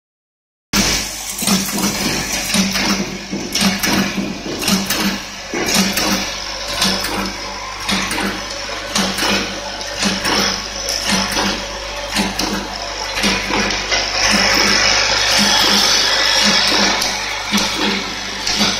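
Automatic nozzle packing machine running, with a low pulse repeating about twice a second over a steady mechanical hiss and scattered clicks. The hiss grows louder and steadier for a few seconds near the end.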